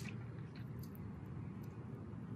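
A few faint clicks of small metal parts being turned and pressed together by hand, as a sewing machine thread tension assembly's spring and basket are joined, over a low steady hum.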